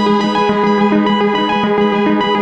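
Electronic music: a synthesizer sequence of quick repeating notes over a steady held low note, with a fast ticking pulse.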